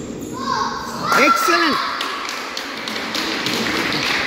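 A young player's short call with rising and falling pitch about a second in, over scattered taps from racket strikes on the shuttlecock and shoes on a wooden badminton court.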